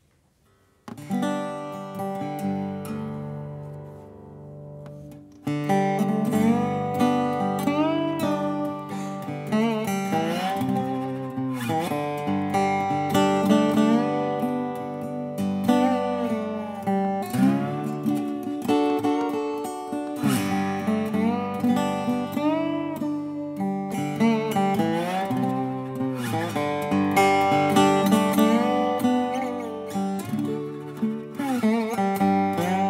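Acoustic Weissenborn-style lap steel guitar played with a steel bar. A chord rings and fades about a second in. At about five and a half seconds a country-bluegrass tune starts, with the notes sliding up and down into pitch.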